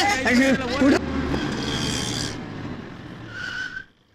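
Small Tata mini truck speeding off with a tyre screech: an engine rumble under a shrill squeal that fades away over about three seconds.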